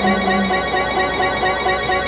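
Music: a sustained chord of held, ringing tones with no singing, the low note shifting about half a second in.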